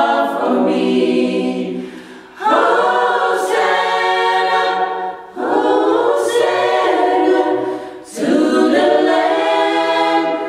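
Amateur choir singing a cappella, unaccompanied voices in held phrases of about three seconds with short breaks between them.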